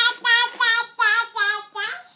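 Toddler girl chanting the Thai particle "jaa" (จ้า) over and over in a high, sing-song voice, about three syllables a second.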